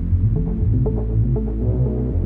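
Bass-heavy background music with a steady low drone and a pulsing beat.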